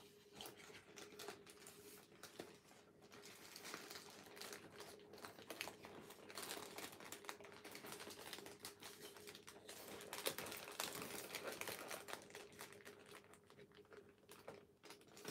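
Faint rustling and crinkling of a large sheet of thin origami paper being folded and collapsed by hand, with a continuous run of small paper crackles and clicks as edges are brought together and creases pinched.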